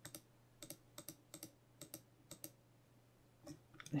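Faint computer mouse clicks, about a dozen over two and a half seconds, many in quick pairs, as Blender's outliner and viewport are clicked through.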